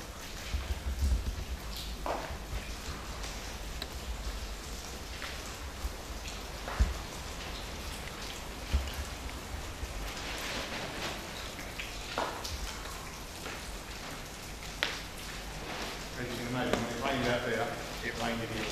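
Footsteps and debris crunching and knocking at irregular times over a low rumble, with faint speech near the end.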